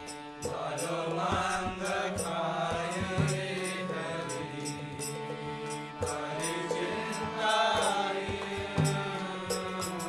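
A man singing a Bengali Vaishnava devotional song in a chanting style, over a steady sustained accompaniment with regular clicking percussion.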